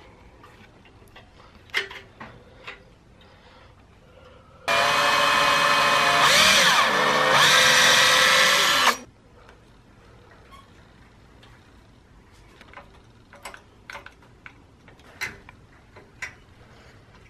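Power drill running for about four seconds, driving a screw through a small brass mounting bracket into a jarrah wood base. Its pitch wavers and breaks briefly about halfway through before it runs on and stops. Faint handling clicks and taps come before and after.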